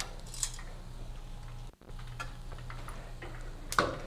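Metal kitchen tongs clicking against a frying pan as fried shrimp are lifted out, a few scattered clicks with the loudest near the end, over a low steady hum.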